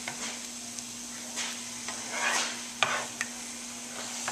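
Scrambled eggs sizzling in a nonstick frying pan while a plastic slotted spatula stirs and scrapes them around, with several uneven scraping strokes over a steady sizzle.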